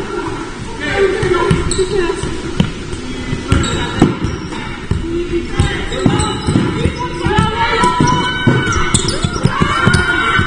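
A basketball bouncing repeatedly on a wooden sports-hall court during live play, echoing in the large hall, mixed with players' indistinct shouts.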